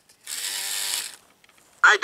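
Small electric motor and plastic gearbox inside an animatronic vampire figure running for about a second as it turns the head, a gritty gear whir that stops abruptly.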